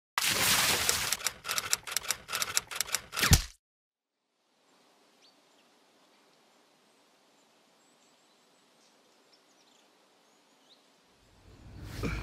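A loud, rapid rattle of sharp clicks and cracks that cuts off suddenly about three and a half seconds in. Then faint open-air ambience with a few soft bird chirps.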